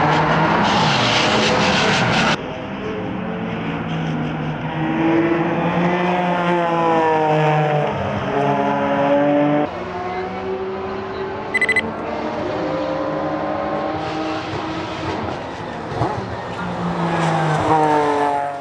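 Porsche 987 Cayman race car's flat-six engine at full throttle, heard from trackside: the pitch climbs through the gears, drops at each shift and swells as the car passes. A short triple beep sounds just before halfway.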